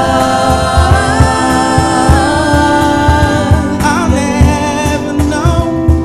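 Live gospel worship music: several voices singing together in long held notes over an electric keyboard, with a steady low beat underneath.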